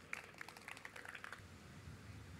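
Faint, scattered hand claps from a small audience welcoming the next reader, thinning out about a second and a half in.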